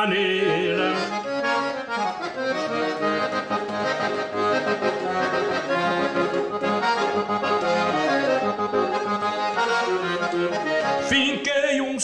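Piano accordion playing a fast instrumental passage of a gaúcho vaneira, a run of quick melody notes over steady accompaniment.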